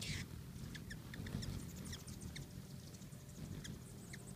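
Hummingbirds at a feeder: a rapid scatter of short, high, squeaky chips and chitters over a low whirring hum of hovering wingbeats, with a brief buzzy burst right at the start.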